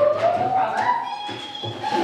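A puppy whining while it is held back: one long, high-pitched whine that rises in pitch, levels off, and fades near the end.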